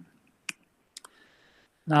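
Two sharp clicks about half a second apart, then faint hiss.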